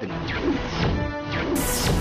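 Dramatic background-score sting: a sudden heavy crash-like hit opens it, followed by falling sweeps and a held chord. A bright swoosh swells near the end.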